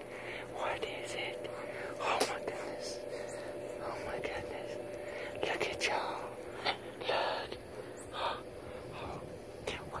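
Young kittens hissing and spitting in a string of short bursts.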